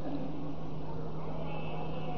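A pause in a speech: steady background hum and low noise of the sermon recording, with no words.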